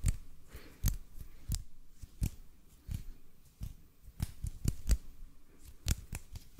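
Bare hands rubbing and patting against each other right at the microphone: a string of irregular sharp skin-on-skin taps, about two a second, with soft rubbing between them.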